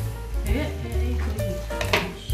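Aluminium foil crinkling and crackling as it is pulled open by hand, over background music with a heavy bass beat.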